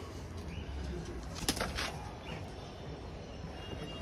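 Faint bird sounds over a low steady background hum, with a couple of soft clicks about a second and a half in.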